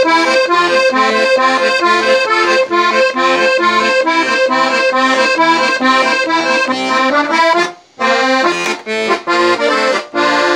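Beltuna Alpstar 38-key, 96-bass piano accordion playing a tune, a melody on the right-hand keys over a steady pulse of lower notes. The playing breaks off for a moment about eight seconds in, then carries on.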